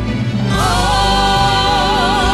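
A woman sings over a live band of violin, guitar and keyboard. About half a second in she starts one long held note that wavers into vibrato toward the end.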